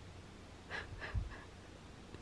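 Cat chirping at a bird: three short, quick chirps about a third of a second apart, with a soft low thump between the second and third.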